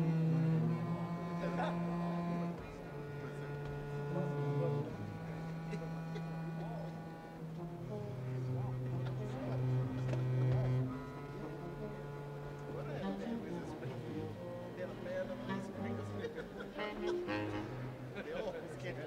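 A jazz big band holds long, soft sustained chords, each lasting two or three seconds before shifting to a new pitch.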